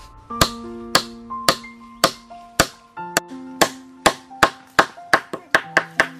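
Hammer blows driving nails into a wooden pole, sharp knocks about two a second that come faster in the second half, over background music with plucked guitar notes.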